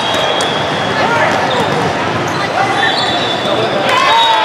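Volleyball rally in a large, echoing hall: sharp hits of the ball off hands and arms, starting with a jump serve, with players shouting. A dense din of other games and brief thin high tones sit underneath.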